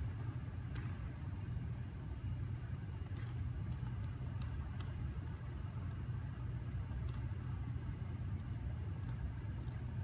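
Steady low rumble of a dance studio's ventilation system, with a few faint taps.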